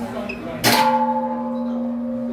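Large temple bell struck once, about two-thirds of a second in, with several steady tones ringing on after the strike. The ring of the previous stroke is still dying away at the start.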